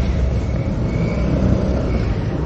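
Street traffic noise: a steady rumble of motor vehicle engines with no single distinct event.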